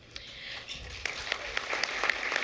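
Scattered audience applause: a light patter of many hands clapping that starts just after the talk stops and builds a little.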